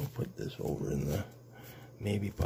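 Low muttered speech for about a second, words too indistinct to make out, mixed with a few light clicks and rustles of polymer banknotes being handled; after that it goes quieter, leaving only a steady low hum.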